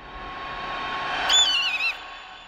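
Sound-design intro: a rushing noise swell that builds, then about 1.3 s in a loud high screech like a bird of prey's cry, wavering and falling in pitch and cut off sharply at the end.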